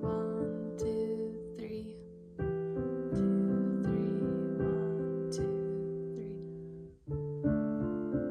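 Kawai piano playing a beginner piece in held chords, a little dissonant-sounding. Each phrase's chords ring and fade away, about two seconds in and again near seven seconds, before the next chords are struck loudly.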